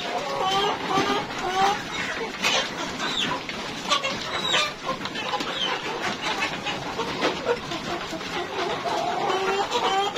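A flock of three-month-old Rainbow Rooster chickens clucking continuously with many short calls while they eat at a feeding trough, with sharp clicks of beaks pecking at the trough.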